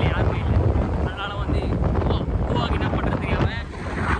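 Wind buffeting the microphone while riding on a moving motorbike, a heavy, constant low rumble, with bits of talking over it.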